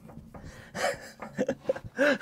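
A man's breathy gasp, then a few short voiced chuckles as the coil spring drops free.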